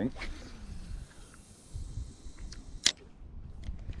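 A cast with a spinning rod: a swish as the rod swings through at the start, then a high hiss of line running off the reel for a second or two, and one sharp click about three seconds in.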